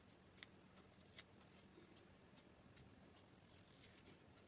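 Near silence, with a few faint ticks and crackles as a black peel-off face mask is pulled away from the skin of the cheek.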